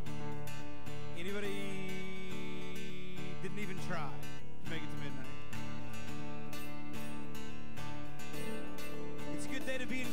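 Live worship band playing: acoustic guitar strumming over sustained keyboard chords.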